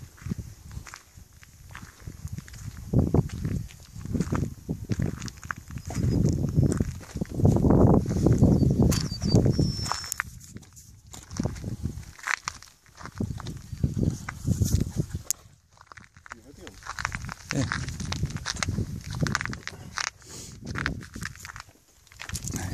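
Footsteps crunching on gravel with wind buffeting the microphone in uneven gusts; the buggy's engine is not running.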